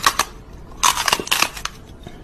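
Close crunching and crackling noises in quick clusters, one at the start and another about a second in.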